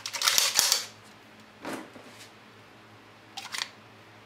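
Metallic clacks and rattles of an unloaded Skorpion vz.61 submachine gun as its action is worked by hand. A loud cluster of clacks comes in the first second, then lighter clicks about two seconds in and again near the end.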